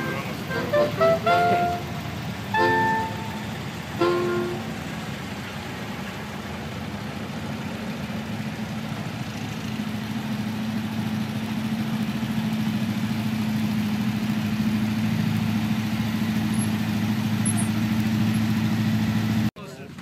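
A quick tune of short pitched notes in the first few seconds, then an air-cooled VW bus engine running steadily, its hum growing louder as the bus approaches, until the sound cuts off suddenly near the end.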